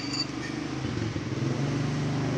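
A motor vehicle engine running steadily and growing a little louder.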